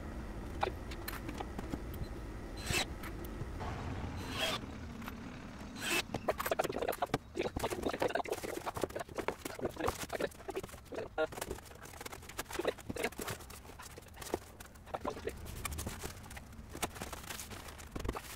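Rigid foil-faced insulation boards being handled and fitted onto a van's ribbed steel floor between timber battens: a run of short knocks, scrapes and clatter of board against metal and wood, growing much busier from about six seconds in.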